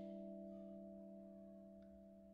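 A vibraphone chord ringing out and slowly fading away, several steady notes dying together. A faint tick comes near the end.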